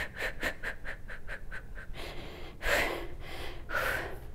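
A woman breathing in quick, rhythmic puffs as she shakes out her body, about six a second and fading away over the first two seconds. Two longer breaths follow, the louder one near the three-second mark and another near the end.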